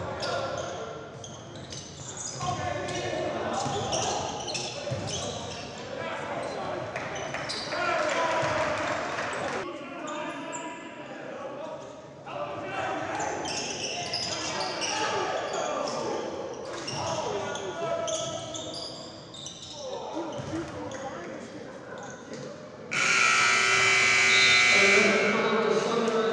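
Basketball bouncing on a hardwood gym floor amid players' and spectators' voices in a large hall. About 23 seconds in, the scoreboard horn sounds loudly for about two seconds: the final buzzer at the end of the game.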